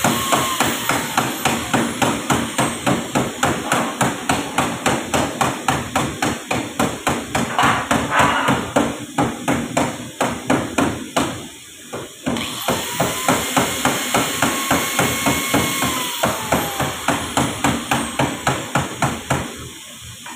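A hand hammer striking car-body sheet metal in a steady rhythm of about three blows a second, with a short break about eleven seconds in.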